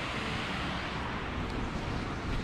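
Steady rush of river water pouring over a low dam below, with wind buffeting the microphone.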